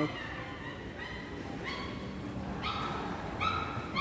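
Terminal background noise with a few short, high, flat whines or squeals, spaced about a second apart.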